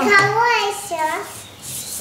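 A young girl's voice speaking briefly, high-pitched, dying away after about a second.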